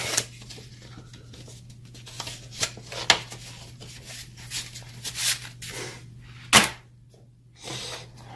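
Paper instruction booklets and cardboard packaging being handled and set down: scattered rustles and light knocks, with one sharp knock, the loudest sound, about six and a half seconds in. A steady low hum runs underneath.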